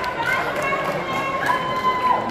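Indistinct voices, several people talking over one another.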